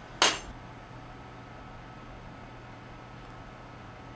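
A single short, sharp noise about a quarter second in, then a steady low electrical hum from the room's equipment.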